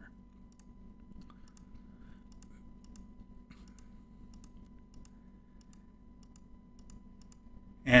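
Faint computer mouse clicks, irregular and a couple a second, stepping through image frames, over a quiet steady hum.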